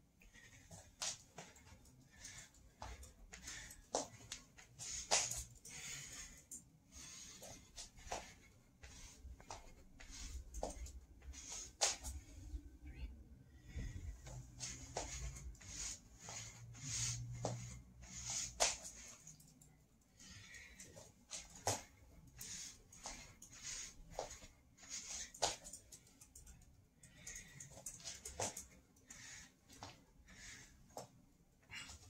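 Irregular thuds and shuffles of hands and feet landing on a hard floor, with heavy breathing, from a person doing navy seal burpees (burpees with push-ups).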